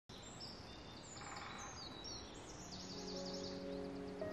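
Small birds chirping and calling over a faint outdoor hiss, with a quick run of repeated chirps about three seconds in.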